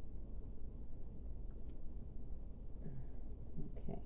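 Room tone: a low steady hum with a faint tick about two seconds in, and a short spoken word at the very end.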